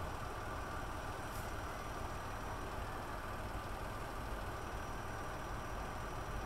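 Small hatchback's engine idling steadily, a low even rumble.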